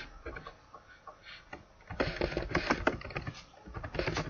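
Computer keyboard typing: a few scattered keystrokes, then a quick run of keystrokes from about two seconds in.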